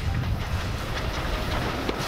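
A Stroudley Terrier steam tank engine and its vintage wooden carriages rolling past at close range. There is a steady rumble, and the wheels clatter over the rail joints.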